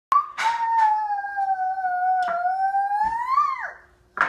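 A toddler's long, high-pitched vocal sound, held for over three seconds and rising then falling away at the end, with a few knocks of wooden puzzle pieces on a glass tabletop.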